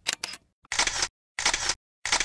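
Camera shutter sound effect: a few quick clicks, then three short shutter bursts roughly two-thirds of a second apart.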